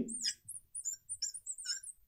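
Marker squeaking on lightboard glass in a string of short, high chirps as a line of text is written.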